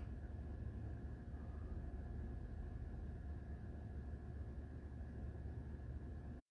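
Faint steady low hum of background noise inside a vehicle, with no distinct events.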